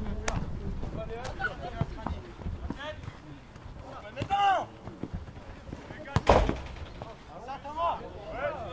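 Footballers' shouts and calls across an outdoor pitch, the loudest call about four seconds in, with one loud, sharp thump about six seconds in.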